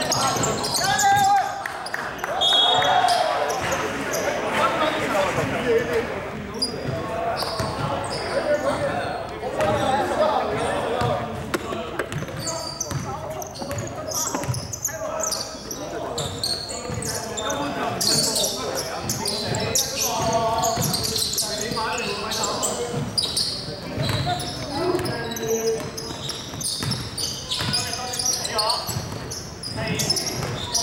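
A basketball game in an echoing sports hall: the ball bouncing on the hardwood court and players calling out, with short sharp impacts and indistinct voices throughout.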